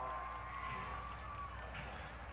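Faint stadium background noise from the field broadcast, with a faint held tone that dips slightly in pitch and fades about a second and a half in.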